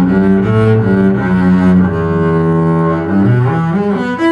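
Solo double bass played with the bow: a phrase of sustained low notes, each held about half a second before moving to the next pitch.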